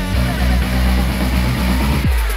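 Background music with a heavy bass line and a busy, repeating pattern, dropping away abruptly at the end.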